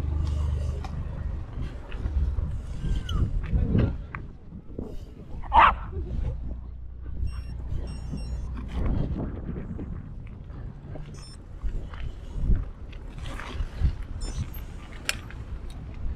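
Bicycle rolling along a canal towpath, tyres on paving and then on gravel, with a steady low wind rumble on the camera's microphone and scattered short knocks and rattles from the bike. A sharp short sound stands out about five and a half seconds in.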